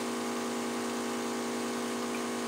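Small compressor of a portable oxygen infusion machine running with a steady hum, feeding an airbrush spray wand, with a faint even hiss over it.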